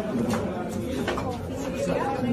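Several people talking over one another in a small crowded room, with a few light knocks and clicks among the voices.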